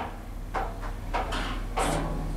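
ThyssenKrupp machine-room-less lift car travelling down, with a steady low hum from the drive and a few soft rushing noises.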